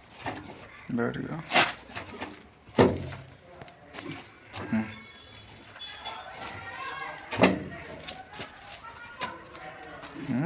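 Hand work on a PVC drain elbow set in soil at the base of a brick wall: scraping and a few sharp knocks as the pipe is handled and rubble is packed around it, with brief speech between.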